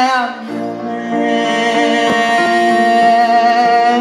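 Live rock band music with a long sustained chord and a held note running over it, and a deeper bass part entering about half a second in.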